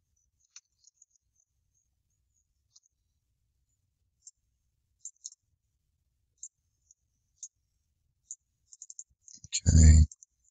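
Faint computer mouse clicks: about a dozen short, sharp ticks, scattered sparsely at first and coming closer together near the end.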